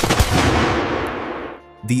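A sharp bang, with a second smaller one just after, followed by a long echo that dies away over about a second and a half: a sharp sound ringing through a bare, hard concrete hall, where the concrete shells reflect sound back instead of absorbing it.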